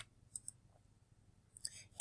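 One sharp click as the lecture slide is advanced, then near silence with a couple of faint ticks, and a faint hiss near the end.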